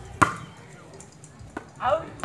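A single sharp thwack of a ball being struck by a player, shortly after the start; a man's voice calls out near the end.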